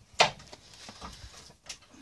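A makeshift bumper-pulling rig, a hydraulic car jack pressing a wooden beam against a dented plastic bumper, under load: one sharp knock about a quarter second in, then faint creaking and scraping.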